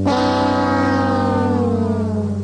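Sad-trombone comedy sound effect: the long last note of the 'wah-wah-wah-waaah', a brass note held and sliding slowly down in pitch, after short stepped notes just before.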